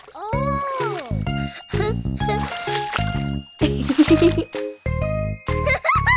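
Bouncy instrumental children's song music with plucked bass notes and tinkling chimes. A whistle-like tone glides up and back down near the start, and another short glide comes at the very end.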